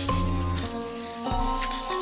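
Background music: a march with held notes that change every second or so over a steady bass line.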